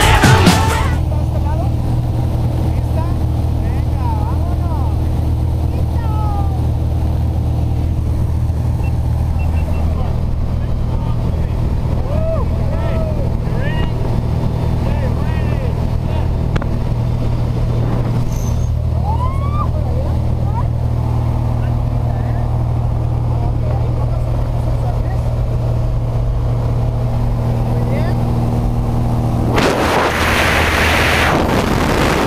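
Steady drone of a small propeller plane's engine heard from inside the cabin, with faint voices calling over it now and then.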